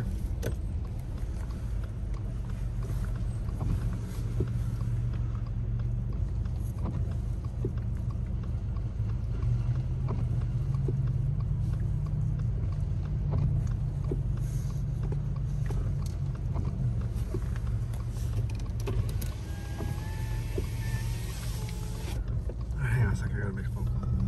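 Steady low rumble of a car's engine and drivetrain heard from inside the cabin while the car idles and creeps forward slowly. Near the end a few seconds of hiss with a faint steady tone come in.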